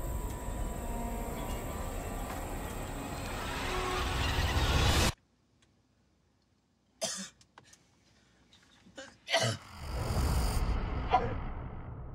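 Film trailer sound design: a dense, building rumble that cuts off abruptly about five seconds in, then near silence broken by a few short, sharp sounds, then a rising noisy swell near the end.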